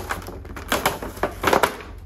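Clear plastic clamshell packaging crackling and crinkling as it is pulled off a craft kit, in several irregular bursts, the loudest about a second and a half in.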